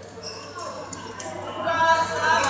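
A few sharp, echoing taps of badminton rackets striking shuttlecocks in a large hall, with voices near the end.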